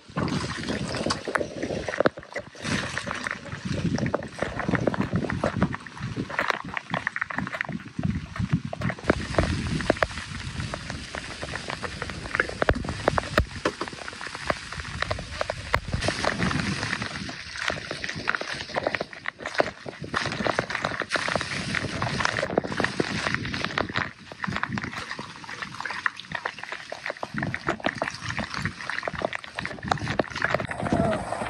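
Gale-force wind of around 30 knots gusting hard across the microphone, with rain and spray splashing and water sloshing around the boat.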